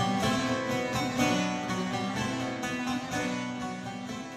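Bağlama (saz, Turkish long-necked lute) playing a plucked melody, easing down in loudness near the end.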